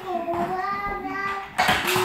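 A high, child-like voice holding a long sung 'oh' on one steady note for about a second and a half; talking starts again near the end.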